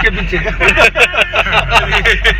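Several men laughing hard together in quick bursts, over the steady low rumble of the car cabin they ride in.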